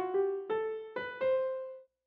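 Stage Grand sampled grand piano in FL Studio playing a rising run of single notes, each a step higher than the last. The final, highest note rings and fades away near the end.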